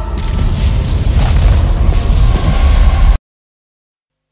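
An explosion with a fireball: a loud, continuous low rumble that swells again just after the start and cuts off abruptly a little over three seconds in.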